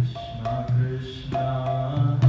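A man chanting a devotional mantra to his own mridanga drum accompaniment, with deep booming bass strokes under the voice and a sharp stroke at the start and another a little past halfway.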